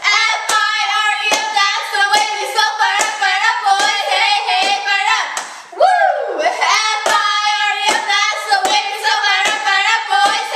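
Two girls chanting a cheer in unison, with sharp hand claps about twice a second keeping the beat. A drawn-out, sliding shout comes about halfway through.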